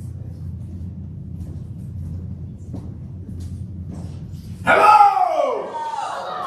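Low steady rumble of room noise in a small theatre. About five seconds in, one voice breaks in with a loud, drawn-out shout that falls in pitch, and more shouting follows.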